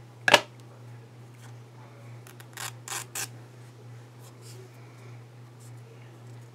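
A sharp click of small craft scissors being handled at a cutting mat, then three softer clicks in quick succession about three seconds in, over a steady low hum.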